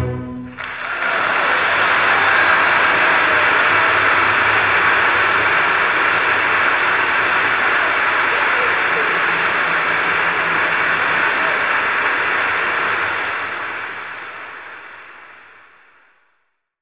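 The orchestra and piano's closing chord cuts off about half a second in, and an audience applauds at the end of the piece. The applause holds steady, then fades out over the last few seconds.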